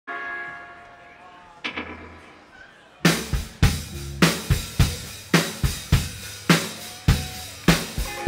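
Live rock band starting a song: a held chord fades for about three seconds, with one light strike partway through, then the drum kit comes in with a steady kick-and-snare beat.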